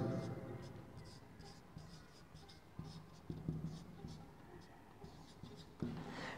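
Felt-tip marker writing on a whiteboard: a string of short, faint strokes as letters are written.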